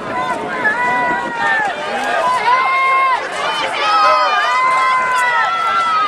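Crowd of football spectators shouting and cheering: many voices overlap in long, high yells throughout.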